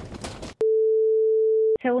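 A steady electronic beep: one pure tone held for about a second, starting and stopping abruptly with a click at each end.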